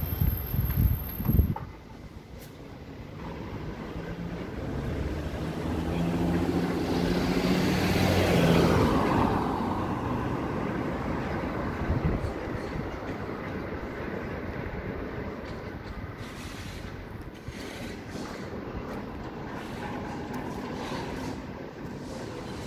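A motor vehicle passes along the street: engine and tyre noise swells to a peak about eight or nine seconds in, then slowly fades. A few low thumps come in the first second and a half.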